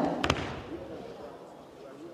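A judoka thrown onto the tatami: a sharp, doubled slap of the body landing on the mat about a quarter second in, then faint hall murmur.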